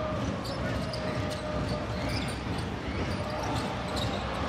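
Steady crowd noise in a basketball arena during live play, with a basketball being dribbled on the hardwood court.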